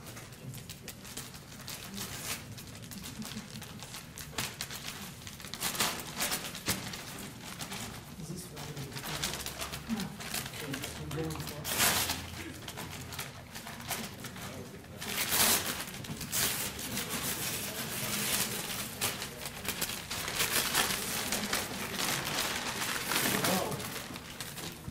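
Pink gift wrapping paper being ripped and crinkled by hands as a large box is unwrapped: repeated rips and rustles, loudest in the middle of the stretch, with voices murmuring underneath.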